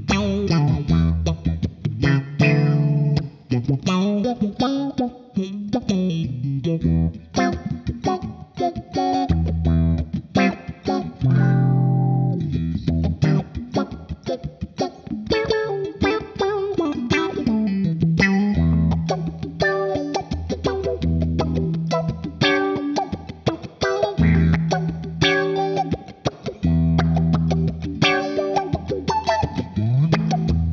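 Electric guitar played through a GFI System Rossie envelope filter pedal: choppy, funky riffs of short notes, each note swept by the filter's wah-like tone.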